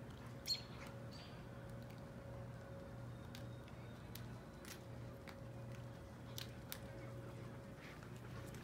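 Faint outdoor background with a steady low hum. A short, high bird chirp about half a second in is the loudest sound, and faint scattered clicks and ticks follow.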